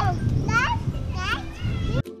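A toddler's high-pitched voice calling out in about three short, rising exclamations, over a low background rumble.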